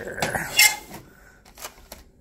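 Metal cabinet drawer being opened and rummaged through, with tools inside clinking and clattering. A sharp clank about half a second in is the loudest, and a couple of lighter clinks come near the end.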